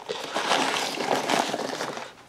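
Foam packing peanuts rustling and squeaking in a cardboard box as a hand digs through them, with the crinkle of a plastic bag being pulled out: a dense, irregular scratchy rustle.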